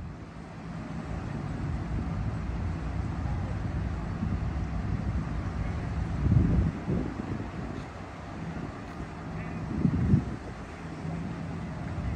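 Outdoor city ambience: a steady low rumble of traffic, with wind buffeting the microphone in two louder gusts, about six and a half and ten seconds in.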